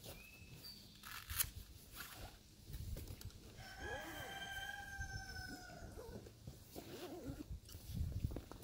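A rooster crowing once, a single held call of about two seconds in the middle, its pitch sagging slightly toward the end. A few sharp clicks and low rustling from a soft fabric bag being unzipped and handled.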